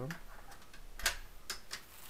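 A door's handle and latch clicking as the door is eased open. There are a few short sharp clicks, the loudest about a second in.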